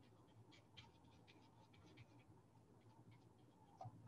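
Near silence, with faint, scattered scratchy ticks of a paintbrush dabbing acrylic paint onto the painting surface.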